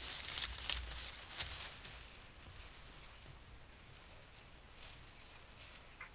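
Faint rustling and patter of river otters rubbing and scrambling on grass, recorded by a trail camera, with a few soft ticks in the first two seconds before it fades to a faint hiss.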